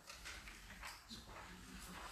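Near-silent room tone with a few faint short knocks.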